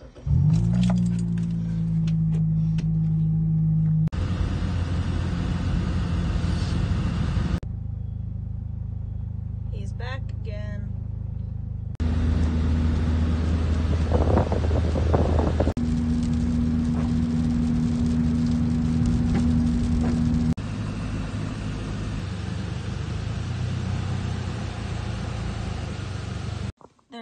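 Car engine and road noise heard inside the cabin while driving: a steady low hum that changes suddenly in pitch and level about every four seconds.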